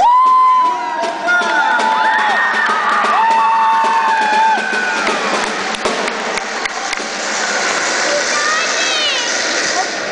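Small crowd cheering: high held shouts and whoops over one another, loudest at the start, then a steadier wash of clapping and voices, with a few rising whoops near the end.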